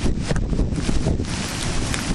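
Hurricane wind buffeting the camera microphone in heavy, uneven gusts with a deep rumble, over the rush of storm surf breaking on the beach and pier.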